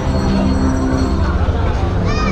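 Busy market ambience: a steady low hum under background chatter from the crowd.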